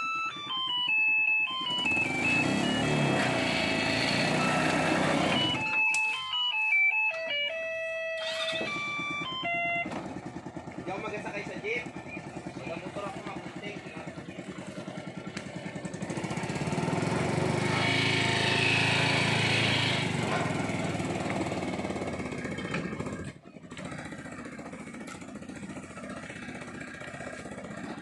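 Small 125cc engine of a homemade mini jeep running and pulling away, getting louder for a few seconds past the middle. A simple stepping melody plays over the first ten seconds.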